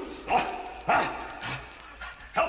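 A man's voice calling out in three short shouted bursts, the cries of a voice actor on an old radio-drama record.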